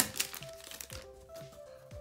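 Foil booster-pack wrapper crinkling as it is pulled open, with a few sharp crackles, the loudest right at the start, over quiet background music with a simple held-note tune.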